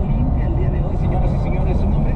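Steady road and engine rumble heard inside a moving car's cabin at highway speed, with faint voices over it.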